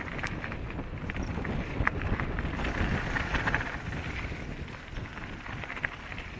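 Downhill mountain bike ridden fast over a dirt forest trail: a steady low rumble of tyres on the ground, broken by frequent sharp clicks and knocks as the bike rattles over bumps.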